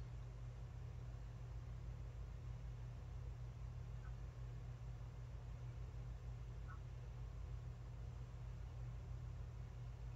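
Faint room tone: a steady low hum under light hiss, with no distinct sounds.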